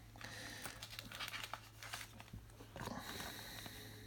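Faint rustling and crinkling of chromium trading cards and thin clear plastic film being handled and peeled, a run of small irregular clicks and crackles.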